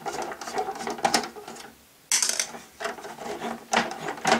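Screwdriver undoing small screws in the plastic hull of a vintage Kenner Slave One toy: a run of irregular clicks and scrapes of metal on plastic, with a brief pause about halfway and then a sudden louder rattle.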